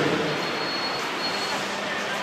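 City street traffic noise: a steady hiss of passing vehicles, with a thin high-pitched squeal lasting about a second.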